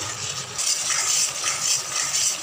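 Spatula scraping and stirring round a kadhai through a thick, grainy mixture of curdled milk, sugar and ghee as it cooks down to thicken, picking up about half a second in, with a faint sizzle from the pan.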